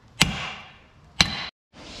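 A hammer striking a steel punch twice, about a second apart, each blow ringing sharply, to drive the ball joint off a removed Toyota Prado 150 front lower arm. The sound cuts off abruptly near the end.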